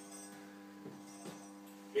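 Faint, steady electrical mains hum with several even overtones, from the running high bay lamps and the standard lamp's ballast. A faint tick comes just under a second in.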